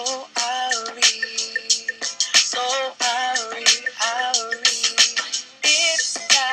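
A man singing live into a handheld microphone over a hip-hop backing beat, holding long wavering notes between short sung phrases, with steady ticking percussion underneath. The mix has almost no bass.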